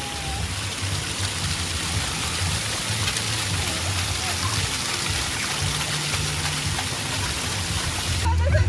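Water spraying steadily from a splash-pad ground jet and splashing over a small child's hands.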